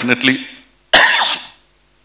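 A man coughs once, a sudden, loud cough about a second in, right after a few trailing spoken words, close into the microphone. The cough comes from a heavy cold.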